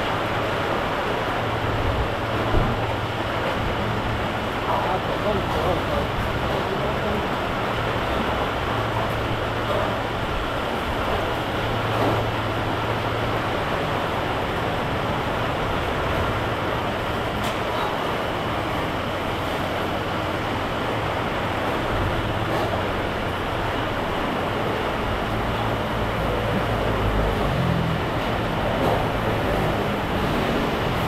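Steady roadside food-stall ambience: a constant hiss with a low hum underneath and faint voices.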